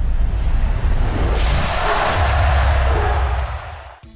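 Intro sting for an animated title: a deep bass rumble under a whoosh that swells about a second in, peaks, then fades away near the end.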